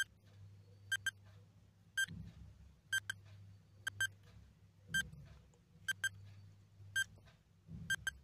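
Countdown timer sound effect: short, high electronic beeps about once a second, many of them in quick pairs, ticking off the seconds of a countdown.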